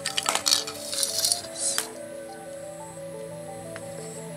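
Background music with a steady melody. Over it, in the first two seconds, a cluster of clicks and rustling from the electrical cable and white plastic plugs being handled.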